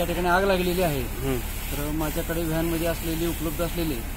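A man talking over a steady hiss of a water jet from a hose spraying onto burnt, smouldering debris.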